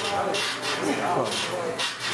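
Rapid, rhythmic breathing with strained grunts from a man doing fast, swinging pull-ups, about two breaths a second.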